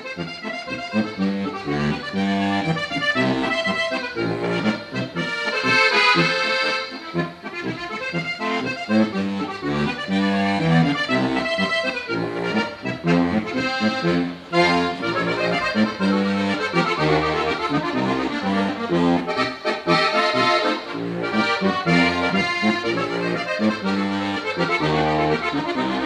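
Solo Munda diatonic button accordion (Slovenian frajtonarica) playing a lively instrumental folk tune, with continuous bellows-driven melody over a steady alternating bass-and-chord beat.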